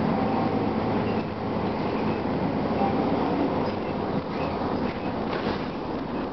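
A 1999 Gillig Phantom transit bus, heard from inside the passenger cabin: a steady hum from its Detroit Diesel Series 50 diesel engine and Allison drivetrain, with a few rattles near the end.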